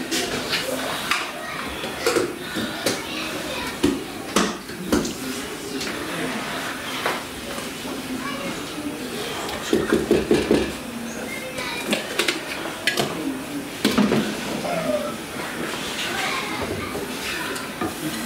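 Kitchen clatter: a spatula clinking and scraping in a frying pan as dry rolled oats are stirred, with several sharp knocks of utensils against pots. Voices are heard in the background.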